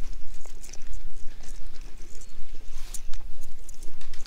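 Wind buffeting the microphone with a steady low rumble, over a run of quick light clicks and rustles from a battery-powered weasel ball toy rolling and flopping its tail through dry grass.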